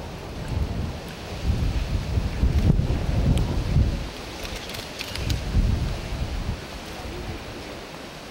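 Gusts of wind buffeting the microphone in uneven low rumbles, with a quick run of camera shutter clicks about four to five seconds in.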